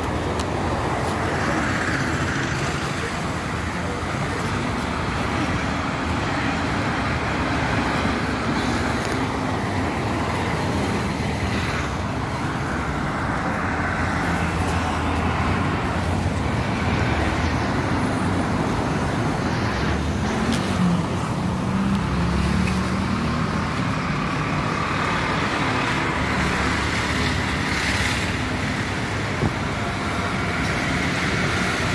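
Steady city street traffic: cars and other motor vehicles passing on the road alongside, with one vehicle's engine passing closer about two-thirds of the way through.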